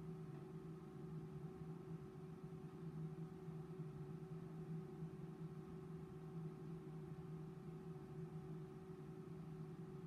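Faint, steady hum with several held tones from a tensile testing machine's drive as its crosshead slowly pulls a specimen, mid-test, before the specimen breaks.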